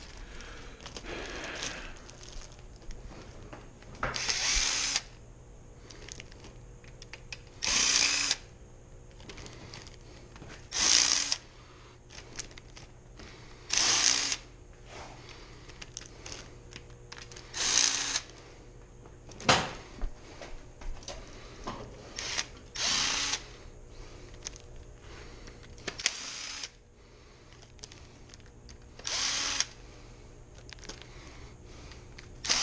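Cordless impact driver backing out the main-cap side bolts of a V8 engine block, run in short hammering bursts, each under a second, about every three to four seconds. A sharp click falls between two of the bursts.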